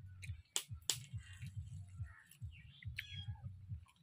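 Eating by hand from a steel plate: fingers picking at fried fish, with soft low rustling and two sharp clicks, just over half a second and about a second in. About three seconds in, a bird gives a brief rapid chirp.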